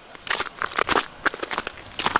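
Footsteps crunching on icy snow and sleet, an irregular run of sharp crackles.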